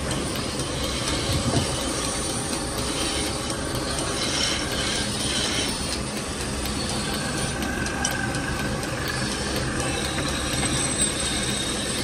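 Steady mechanical running noise of workshop machinery.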